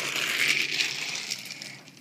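Steady scraping, rattling noise of die-cast toy cars being handled and slid across a wooden floor, fading out near the end.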